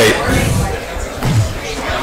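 A man's voice through a hall's microphone and PA finishing a word, then indistinct low voices and shuffling room noise in a large hall.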